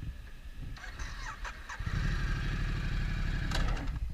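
2015 Ducati Multistrada's L-twin engine running at low speed, then pulling harder about two seconds in as the motorcycle moves off from a stop, with a few light clicks just before.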